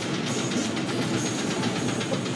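Amusement park ride in motion, a steady rattling mechanical rumble, with music playing in the background.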